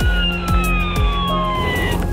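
Emergency vehicle siren on a slow wail, its pitch peaking just after the start and falling steadily, over background music with low sustained notes.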